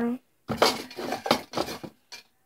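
Hands rummaging in a bag for a paper question slip: a few rustling, lightly clattering scrapes in a row.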